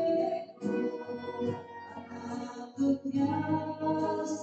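A woman singing a slow communion hymn with instrumental accompaniment, the notes held and changing about once a second.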